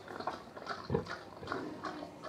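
A pig eating at a feed trough and grunting, with one louder grunt about a second in.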